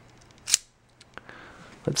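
A metal multitool being handled: one sharp metallic click about half a second in, followed by a few faint ticks.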